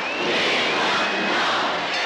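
Large arena crowd cheering and yelling, a loud, steady din.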